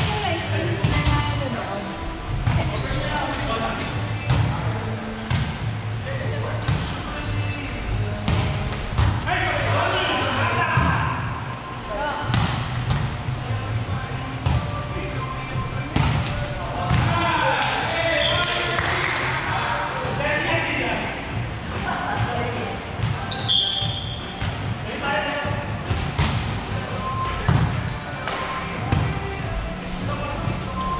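Volleyball rallies in a gymnasium: repeated sharp hits of the ball on hands and floor, with players calling out to one another during play.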